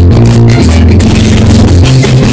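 A merengue típico band playing live and loud: button accordion, saxophone, electric bass and hand drums (tambora and congas), with a moving bass line underneath.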